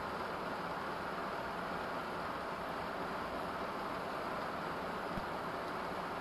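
Steady, even background hiss with no speech, unchanging throughout.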